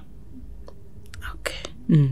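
A pause in a person's talk: a low steady hum with a few faint clicks, a soft, half-whispered word about one and a half seconds in, then speech resuming right at the end.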